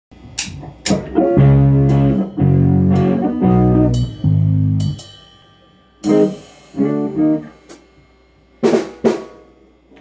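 Rock band playing live: guitar chords held over drum kit, with sharp drum and cymbal hits, in a stop-start pattern where the sound breaks off twice and dies away before the next hits.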